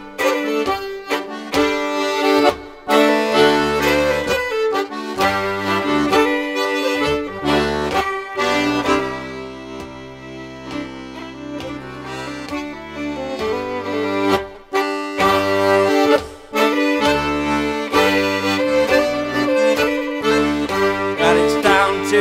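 Instrumental break of a traditional English folk tune on melodeon: the melody over pumped bass chords in a steady dance rhythm. It eases into softer held chords about nine seconds in, and the rhythm returns a few seconds later.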